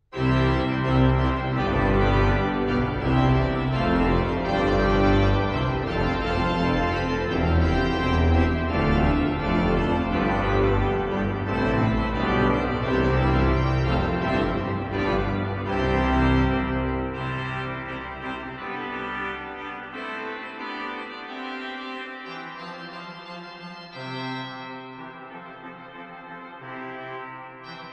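Hauptwerk virtual pipe organ, sampled from the St Mary-le-Bow organ, playing loud chords in C major over deep pedal notes, starting all at once. After about eighteen seconds the pedal drops out, and the playing thins and grows quieter on the manuals.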